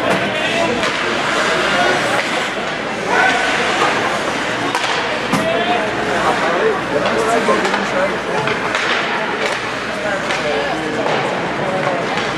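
Ice-hockey game sound in an arena: spectators chattering over one another without clear words, with a few sharp clacks of stick and puck from the play, the loudest about five seconds in.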